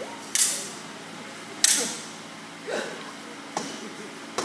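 Stage-combat weapon striking a shield in a rehearsed fight: four sharp knocks, the first two loudest.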